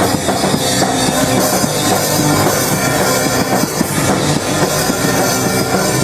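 Punk band playing live and loud: electric guitar, bass and drum kit in a dense, unbroken wall of sound.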